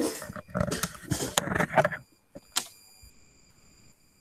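Rustling and knocking of a person getting up from a desk, for about two seconds. Then a single sharp click, and a faint steady high-pitched whine.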